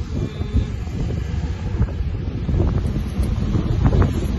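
Wind buffeting a phone's microphone, a loud, uneven low rumble that gusts up and down.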